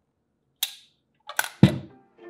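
A sharp click, then a couple of quick clicks and a heavier knock near the end, from handling the red plastic base of a candy dispenser and its metal parts.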